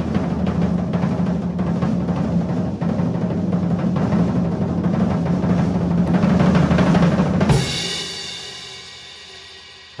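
Drum roll on a drum kit, growing slightly louder for about seven seconds, then a closing crash on a cymbal about three-quarters of the way in that rings on and fades away.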